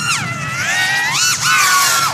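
Motor whine of a 5-inch FPV racing quad running on 6S with low-kv motors, flying fast laps. The high, buzzy pitch sags as the throttle eases, then jumps up sharply about a second in and drops back.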